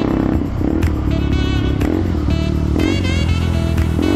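Background music with a melody, over a motorcycle engine running as the bike rides along.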